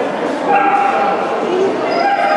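A dog whining: one long, high, steady-pitched whine starts about half a second in and lasts about a second, and another begins near the end, over a steady murmur of crowd chatter in a large hall.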